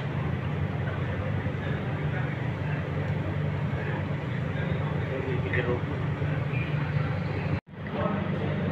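Steady low hum with a rushing background: the running drone of kitchen equipment. It cuts out for a moment near the end.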